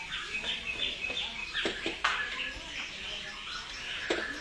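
Small songbirds chirping in quick, short repeated notes, with a few sharp clicks about halfway through.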